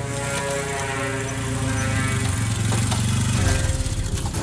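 A motorcycle engine running steadily, slightly louder near the end.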